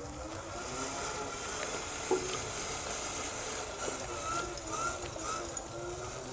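Electric drive motor and gearbox of an RC Zetros 6x6 truck whining faintly under the load of a lowboy trailer carrying a model dozer, the pitch wavering with the throttle. There is a small knock about two seconds in.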